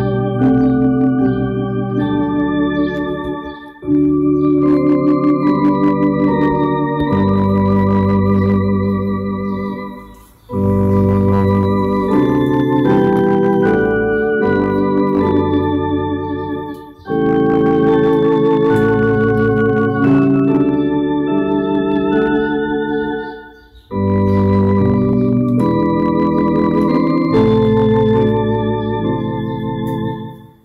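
Electronic church organ playing slow sustained chords with a slight vibrato, in phrases of about six to seven seconds separated by short breaks.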